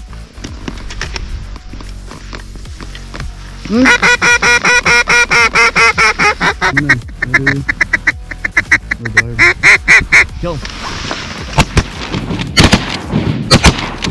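A duck call blown in a loud, fast run of quacks, about five a second, starting about four seconds in and slowing before it stops near ten seconds. Then several shotgun blasts in quick succession near the end.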